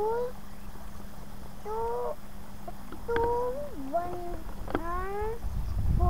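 A young girl's high voice in several short, rising, sing-song phrases with pauses between them.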